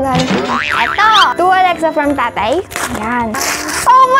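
Springy cartoon-style sound effects, several wobbling glides that rise and fall in pitch, ending in a brief rustle of paper near the end.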